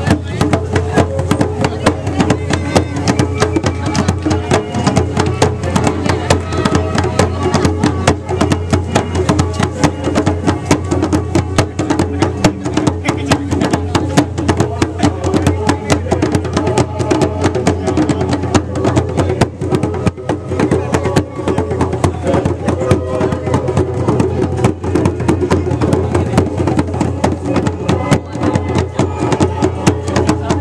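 Several djembe hand drums played together in a fast, steady rhythm, with voices over the drumming.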